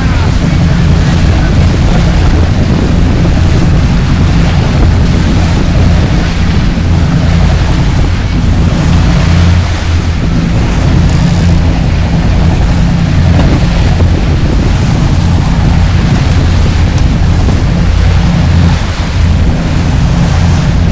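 Sportfishing boat's engines running steadily under way, a constant low drone with the wake churning and rushing behind, and wind buffeting the microphone.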